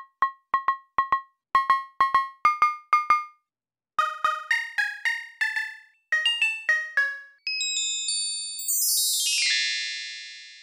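Synthesized percussion from a Tiny Voice software synth: short, pitched metallic hits that decay quickly, first a cowbell sound repeated in quick rhythmic figures, then denser ringing metal strikes. In the last couple of seconds comes a shimmering cascade of many high, overlapping chime tones falling in pitch, like wind chimes.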